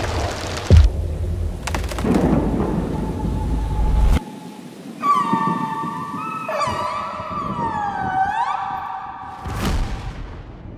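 A deep rumble with hiss and a sharp thump about a second in, cutting off suddenly after about four seconds. From about five seconds in come killer whale calls: layered whistling tones that bend down and sweep back up, several overlapping. Just before the end a rising whoosh cuts off.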